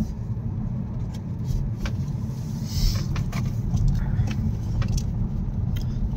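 Car cabin noise while driving: a steady low rumble of engine and tyres heard from inside the car, with a few faint clicks.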